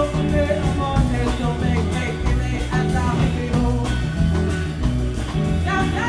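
Live band music: a woman singing into a microphone over electric guitar, a deep bass line and a steady beat.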